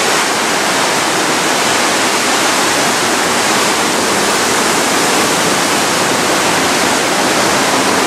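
Loud, steady rush of the Aare river's whitewater surging through the narrow limestone gorge just below the walkway.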